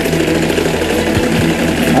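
A loud, steady electrical hum-buzz with evenly spaced overtones, laid over the whole soundtrack, with faint voices beneath it.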